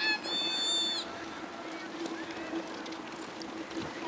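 A child's high-pitched squeal, held for under a second at the start, over the steady scrape and hiss of ice skates on the frozen canal. A faint steady hum runs underneath.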